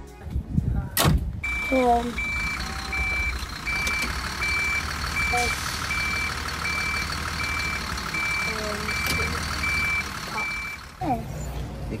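A machine's reversing alarm beeping steadily, one high tone roughly every three-quarters of a second, over a low engine hum; it starts about a second and a half in and stops about a second before the end.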